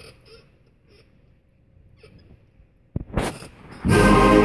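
A hushed hall with faint rustling, then about three seconds in a few sharp drum strokes. Just before the end the full school concert band comes in loud with brass and woodwind chords, starting a march.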